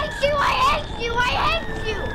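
High-pitched wordless crying in two short bursts, over a faint steady background tone.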